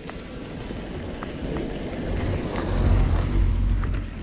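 A bicycle rolling along a dirt road, with wind rumbling on the microphone that swells louder about three seconds in, and a few faint clicks.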